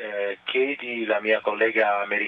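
A man speaking continuously over the station's space-to-ground radio link, which makes his voice sound narrow and thin.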